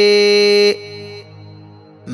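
A monk's voice chanting Sinhala seth kavi blessing verses, holding one long steady note that stops about three quarters of a second in, followed by a short lull.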